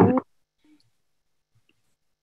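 A brief voice sound, a quarter second long, at the very start, then near silence.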